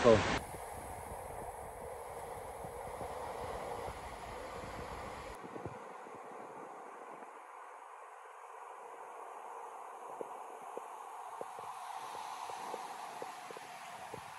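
Steady outdoor background hiss, changing abruptly about five seconds in and again near twelve seconds.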